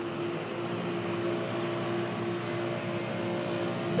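A steady mechanical hum with one constant mid-pitched tone over a background haze, unchanging throughout.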